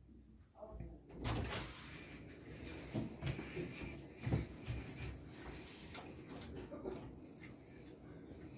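Rustling and handling noise as a knitted sleeve brushes over a cloth-covered table and a hand places a magnetic stone into a foam tray, with a few soft knocks. The rustling starts about a second in.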